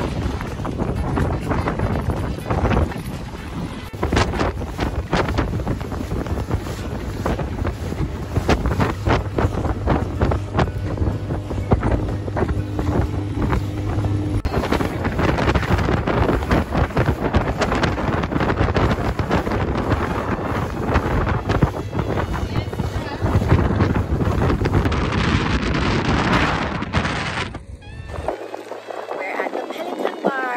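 Open motorboat running fast across choppy sea, with heavy wind buffeting the microphone and water splashing against the hull.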